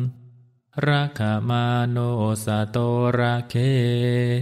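A Buddhist monk's male voice chanting a Pali verse in a steady, nearly monotone recitation, starting just under a second in after a brief pause.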